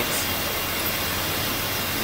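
Two-colour offset printing press running: a steady, even mechanical noise with a faint constant tone.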